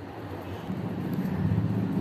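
A low, steady rumble that grows louder from about half a second in.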